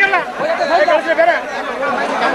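Several people talking at once in a close crowd: overlapping chatter, with one man's voice standing out.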